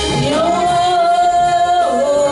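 Worship singing: a woman's voice slides up into one long high note held for over a second, then drops away near the end, over sustained musical accompaniment.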